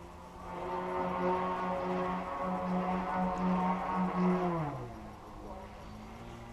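3D Hobby Shop Extra 330 RC aerobatic plane flying by. Its motor and propeller drone swells in over about a second and holds, wavering slightly with the throttle, then drops quickly in pitch and fades near the end as the plane passes and moves away.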